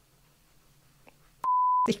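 A short censor bleep: a single steady high beep of under half a second, about one and a half seconds in, inserted in the edit over a spoken word, after near silence.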